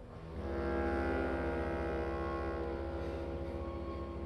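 Orchestra sounding a sustained low chord. It comes in sharply just after the start, swells within the first second, and is held, slowly fading.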